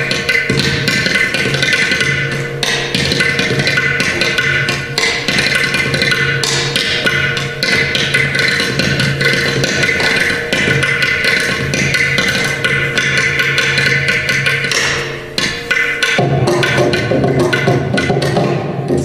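Mrudangam and ghatam playing a fast, dense passage of Carnatic percussion strokes over a steady drone. There is a brief lull about fifteen seconds in, then the playing picks up again.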